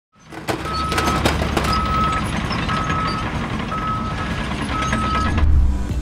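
A heavy vehicle's reversing alarm beeping five times, about once a second, on one steady tone over a continuous low engine rumble, with a few sharp knocks in the first two seconds.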